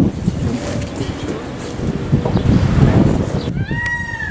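Wind buffeting the microphone, with faint voices. About three and a half seconds in, the sound changes abruptly and a drawn-out animal call with a rising-then-falling pitch begins and carries on past the end.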